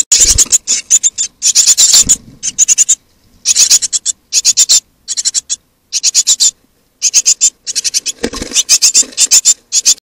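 Tit nestlings begging inside a nest box: rapid, high-pitched calls in bursts with short pauses between. A few low thumps from movement in the box break in, one at the very start and one near the end.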